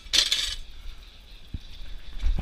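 A short metallic clinking and jingling of barbell plates shifting on the bar's sleeves as the bar is handled, followed by a soft low knock about a second and a half in.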